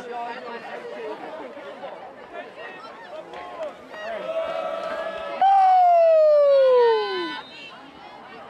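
Sideline chatter of several voices. About four seconds in, one voice holds a long call that, a little later, becomes a loud, drawn-out yell falling steadily in pitch for about two seconds and then dying away.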